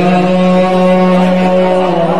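A man's voice chanting a religious invocation, holding one long steady note.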